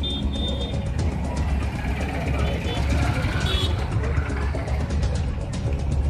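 Background music mixed with street sound: road traffic and indistinct voices.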